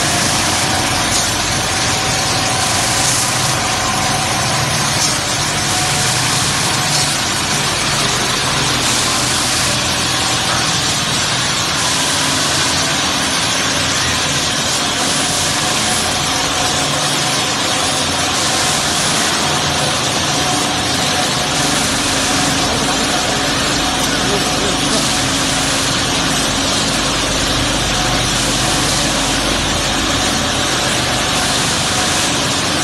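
Automatic stainless-steel hinge polishing machine running: buffing wheels spinning against the hinge parts, a loud steady machine noise with a high hiss that swells and fades every few seconds.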